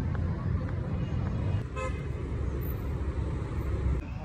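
A short vehicle horn toot just under two seconds in, over a steady low rumble.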